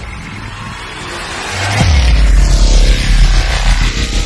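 Cinematic intro sound effects for an animated bank-vault door opening, with music: a swelling whoosh, then about two seconds in a deep falling boom that settles into a heavy low rumble, with more sweeping whooshes near the end.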